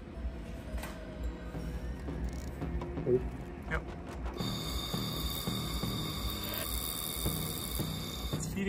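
Background music, joined about four and a half seconds in by a steady high-pitched whine with hiss as the handheld laser welder fires on the sheet-steel joint. The wire is not melting in.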